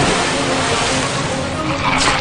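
Loud 5D-cinema attraction soundtrack effects: a dense, steady rushing noise with no clear beat or voice.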